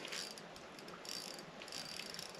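Fishing reel being cranked faintly as a bass is reeled in on the line.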